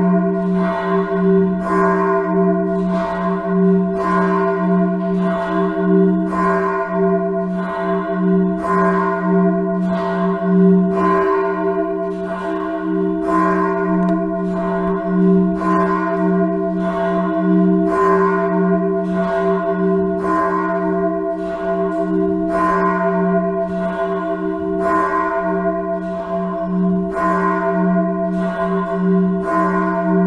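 Swinging church bell tolling, struck about once a second, its low tone ringing on unbroken between the strokes.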